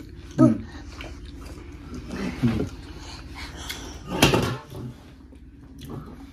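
A man eating and humming "mm" in appreciation of the food, twice, with a short breathy sound about four seconds in, over a steady low hum.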